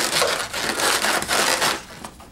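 Inflated latex twisting balloons rubbing against each other and against the hands as a balloon sculpture is handled, a loud, dense rustling that dies away shortly before the end.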